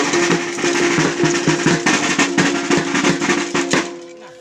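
Kulintang-style gong-and-drum ensemble playing Sagayan dance music: quick, dense drum strokes under steadily ringing gong tones. The music breaks off at the very end.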